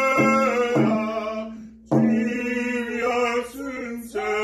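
A man and a woman singing a hand-drum song together in long, held chanted notes, with a rawhide frame drum beaten under the voices. The singing breaks for a breath about halfway through and then starts again.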